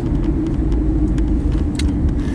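Steady low drone of a car on the move, engine and road noise heard from inside the cabin, with a light click near the end.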